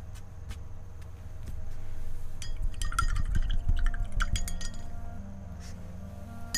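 Paintbrush clinking against a glass water jar as it is rinsed: a quick run of light clinks and taps starting about two and a half seconds in and lasting about two seconds.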